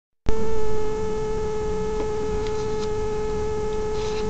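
A steady electrical hum at a constant mid-high pitch with overtones, over a bed of low noise. It starts abruptly just after the beginning and is a little louder for the first half second. A few faint clicks come near the middle, along with paper being handled.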